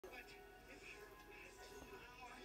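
Faint television audio: a puppet show's voices over music, heard off a TV set across the room.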